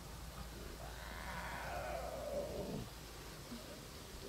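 A lion cub's mewing call: one drawn-out bleat-like cry starting about a second in, rising and then falling in pitch over about two seconds.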